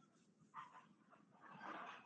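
Near silence: room tone with two faint brief sounds, one about half a second in and a slightly longer one near the end.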